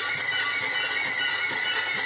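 Divided first and second violin sections of a string orchestra playing rapid, very high repeated-note figures together, a dense, steady mass of high notes.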